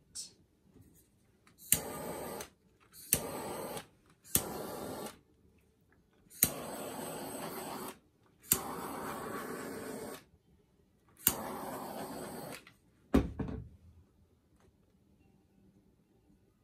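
Handheld butane torch fired in six short bursts, each a sharp igniter click followed by about a second or so of steady flame hiss, passed over wet acrylic paint to pop surface air bubbles. A single knock follows near the end.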